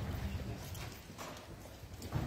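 Footsteps of people walking on a wooden floor: a few separate knocking steps.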